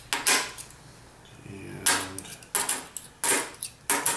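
Half-dollar coins clinking as they are set one at a time onto a stack on a wooden table: sharp metallic clinks, a few at first, a pause of about a second, then several more.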